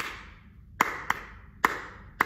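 Hands clapping a dotted rhythm: four claps, long-short-long-long (dotted quarter, eighth, two quarters), each ringing briefly in the room.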